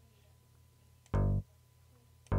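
A single short synth bass note from Studio One's DX Bass preset, sounded once about a second in as the note is drawn into the piano roll and auditioned.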